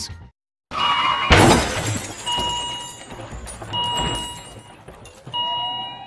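A sharp crash with shattering glass about a second in, then a steady electronic ding sounding three or four times, about every second and a half, with a rising tone near the end.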